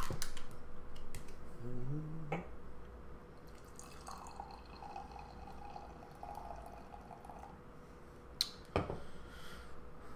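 Sour beer being poured from a can into a glass, a faint liquid pour and fizz. A short hum of voice comes about two seconds in, and two sharp knocks come near the end.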